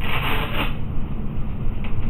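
Hook-and-loop (Velcro) straps on a back brace being pulled and pressed by hand: a raspy rip in the first half second or so, then fainter scratchy rubbing of the straps.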